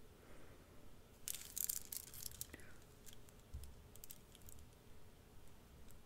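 Faint light clicks and rustles of a strand of glass beads being handled, in a cluster about a second in and again around four seconds.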